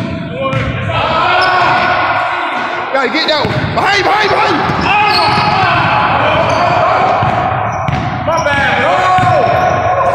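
A basketball bouncing on a hardwood gym floor during a full-court pickup game, with players' voices over it.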